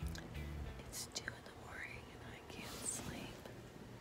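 Quiet whispering voices with soft rustling and a few light clicks.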